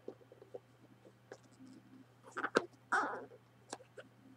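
Small cardboard box handled and turned over in the hands: light taps and scrapes of fingers on the card, with a louder cluster of taps and a short rustling scrape about two and a half seconds in.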